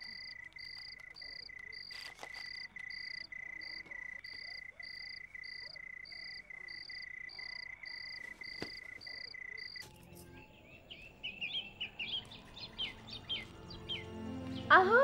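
Night ambience of crickets: a steady high trill with a regular chirp about two times a second. It cuts off sharply about ten seconds in and gives way to birds chirping.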